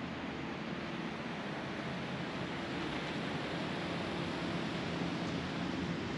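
Steady city street background noise: an even rush of distant traffic with a faint low hum, no single event standing out.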